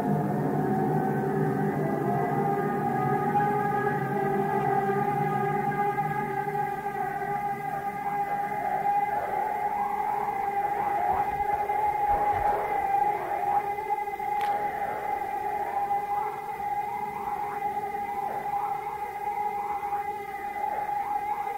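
Drone music: layered sustained tones held steady, with a low rumble underneath that thins out in the first few seconds. From about eight seconds in, short swooping pitch glides keep rising and falling over the drone, siren-like, and there is a single faint click near the middle.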